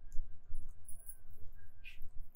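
Quiet room tone: a steady low hum with a few faint clicks, and a short rustle just before the end.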